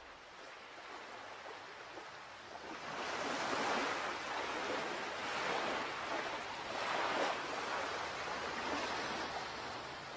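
A rushing, surf-like noise that builds about three seconds in and swells again around seven seconds, like waves washing in.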